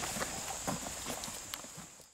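Footsteps walking away through grass, a few soft steps about every half second, fading out near the end.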